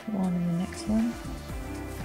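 Soft background music, with two short low vocal sounds in the first second, a longer one and then a brief slightly higher one, louder than the music.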